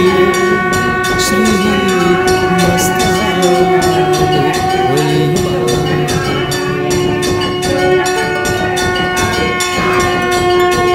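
Telugu devotional song: a steady held drone with a regular beat under a male voice singing long, sustained notes.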